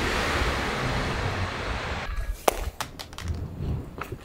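A rushing whoosh for about two seconds, then a few short sharp clacks: an iPhone 14 Pro dropping onto an asphalt street and clattering across it.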